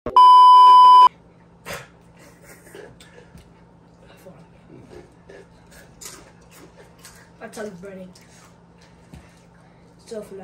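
A single loud, steady electronic censor bleep lasting about a second at the start, then a quiet room with faint low voices and a steady low hum.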